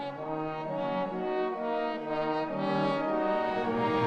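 Symphony orchestra's brass playing a slow phrase of held notes that step from pitch to pitch.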